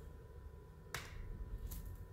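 Quiet room tone with a faint steady hum, broken by a single sharp click about a second in.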